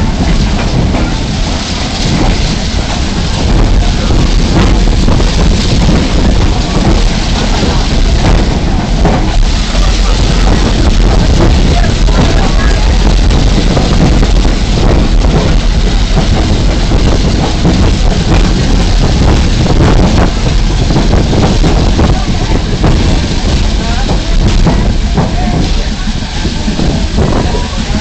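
Loud, steady rumbling of a moving train heard from on board, with wind buffeting the microphone and indistinct voices.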